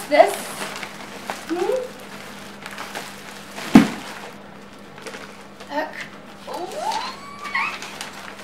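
A baby's short babbling calls, high-pitched and gliding upward, a few times, and one sharp knock a little under four seconds in, the loudest sound.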